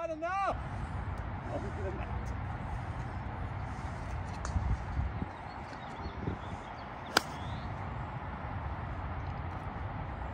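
A single sharp crack about seven seconds in as a golf club strikes a ball off the tee, heard against a steady low background rumble.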